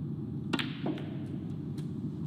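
A snooker cue strikes the cue ball with one sharp click about half a second in. A softer, duller knock of the ball follows about a third of a second later, then a couple of faint ticks, over a steady low hum of the hall.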